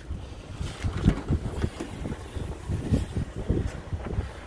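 Wind buffeting the microphone: uneven low rumbling gusts.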